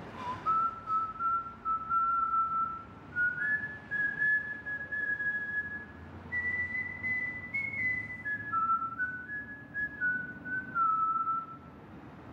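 A man whistling a slow tune in long held notes. They climb step by step over the first two-thirds, then wander back down and stop just before the end.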